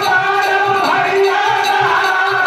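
A group of men singing a devotional folk song together through stage microphones, with long held and gliding notes. A drum beats steadily a few times a second under them, with jingling percussion.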